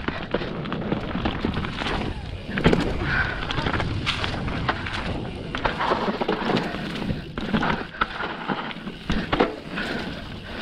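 Mountain bike riding fast down a dirt trail: tyres rolling over packed dirt and dry fallen leaves, with many sharp rattles and knocks from the bike over bumps.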